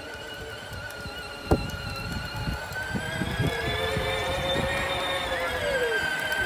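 Electric motor and gearbox of a battery-powered John Deere Gator ride-on toy whining steadily as it drives, rising slightly in pitch in the middle and dropping near the end as it slows, with a few short knocks as it rolls over the lawn.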